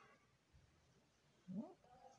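Near silence: room tone, then one short spoken word with a rising pitch about one and a half seconds in.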